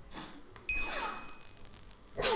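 Opening music of an animated educational video, played through a computer: a sudden bright, glittering chime under a second in, with downward sweeping tones.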